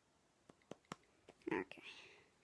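Light finger taps on an iPad touchscreen, about five quick clicks, followed near the end by a softly spoken "okay".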